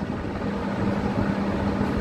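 A steady low hum with one constant pitch, over an even background rumble.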